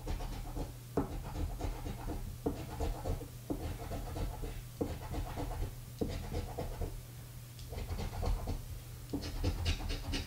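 A round scratcher disc scraping the silver coating off a lottery scratch-off ticket in a run of short back-and-forth strokes, with brief pauses every second or so.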